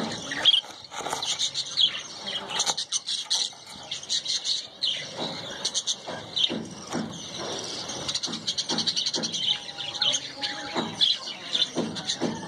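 Small aviary birds chirping and squeaking in a dense, rapid, high-pitched run, with a short steady mid-pitched note in the last few seconds.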